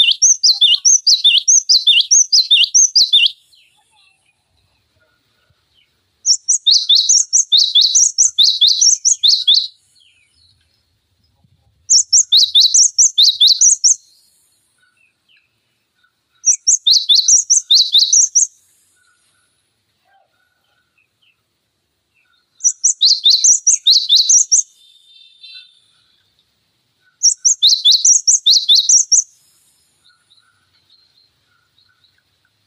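Cinereous tit (gelatik batu) singing in six bursts of rapid, repeated high down-slurred notes. Each burst lasts two to three seconds, with pauses of a few seconds between them.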